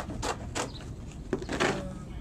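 Reinforced polyethylene pond liner (BTL PPL-24) crinkling and rustling in short bursts as it is gripped and pulled into place, loudest about one and a half seconds in.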